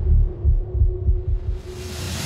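Trailer soundtrack: a few deep low thumps under a held steady drone tone. From about one and a half seconds in, a hissing swell rises and grows louder.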